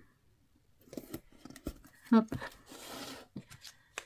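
Craft materials handled on a cutting mat: a few light clicks and knocks, then a short papery scrape about two-thirds of the way through.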